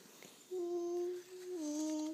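A voice humming two long, steady notes, the second slightly lower than the first.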